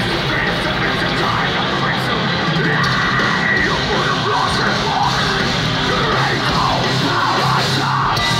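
Heavy metal band playing live and loud: distorted electric guitars, bass and drums in a dense, unbroken wall of sound, with shouted vocals over it.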